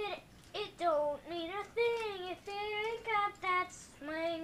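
A young boy singing a jazzy tune on wordless syllables: a run of about eight short notes, some of them bending in pitch.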